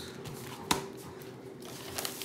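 A cardboard multipack of fruit cups being handled, with one sharp knock less than a second in as it meets the tabletop. A steady low hum runs underneath.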